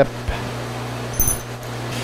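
Metal lathe running with its chuck spinning and no cut being made: a steady hum, with a short faint high ring a little past a second in.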